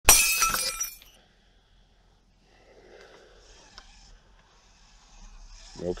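A sudden loud clatter at the very start that rings out and dies away within about a second, followed by faint noise.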